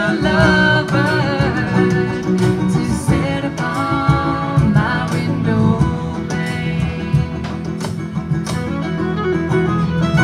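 Live bluegrass band playing an instrumental passage: banjo picking over upright bass and drum kit, with a fiddle carrying a wavering melody line.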